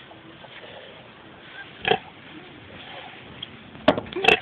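Pigs in a farrowing pen, a sow with newborn piglets: one short, sharp pig call about halfway through over low background sound, then a brief sharp knock near the end.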